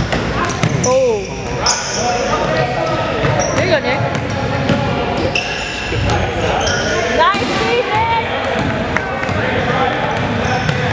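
Basketball game sounds on a hardwood gym floor: the ball bouncing and hitting the floor repeatedly, short sneaker squeaks, and players and spectators calling out.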